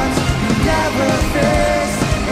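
Rock band playing live through a concert sound system: electric guitars over a steady drum beat.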